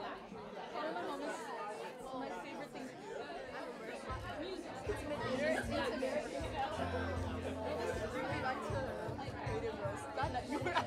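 Indistinct chatter of several voices, with music and a low bass line coming in about four seconds in.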